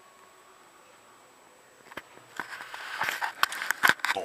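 Faint room tone, then from about two seconds in a click and a run of loud, irregular rustling and knocking: a handheld camera being turned round and handled close to its microphone.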